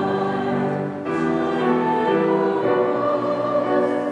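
A congregation singing a hymn together with piano accompaniment, in sustained sung lines with a short breath between phrases about a second in.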